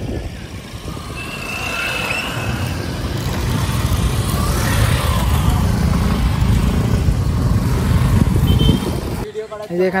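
Motorcycles and a scooter riding past on a dirt track. Their engine noise grows louder over several seconds as they pass close, then cuts off suddenly near the end.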